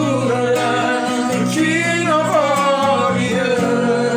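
Worship song: a woman singing, her voice sliding between notes, over acoustic guitar chords.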